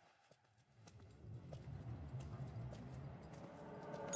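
Near silence for about a second, then a low rumble comes up under soft, irregular footsteps, about two a second.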